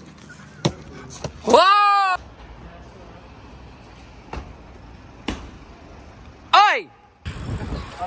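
Two short vocal exclamations: one 'ooh'-like call arching up and then down about one and a half seconds in, and a shorter falling one near the end. Between them come a few sharp knocks, over low street background noise.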